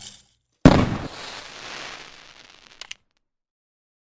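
Intro-animation sound effect: a sudden burst about half a second in that fades away over the next two seconds, ending in two quick ticks.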